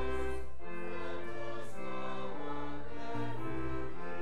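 Church organ playing a slow piece in sustained chords over a low bass line, the chords changing about every half second to a second.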